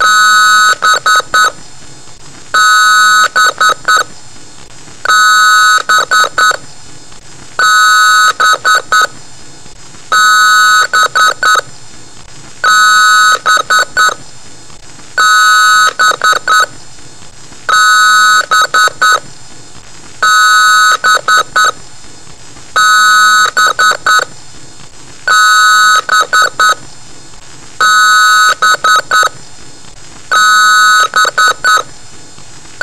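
Loud electronic beeping in a repeating pattern, about once every two and a half seconds: each time one held high beep, then three or four short ones in quick succession.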